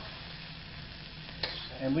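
Bell pepper strips sizzling in hot oil in a wok, a steady frying hiss, with one sharp click about halfway through.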